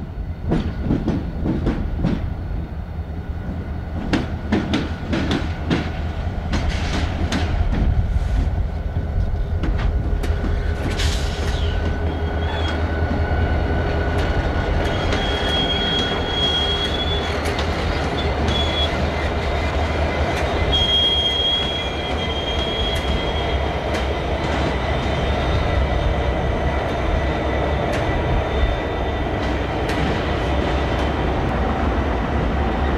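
Diesel freight locomotives passing close by, with a steady low engine drone and wheels clicking over rail joints, heaviest in the first ten seconds. From about twelve seconds in, a thin high wheel squeal comes and goes for about ten seconds.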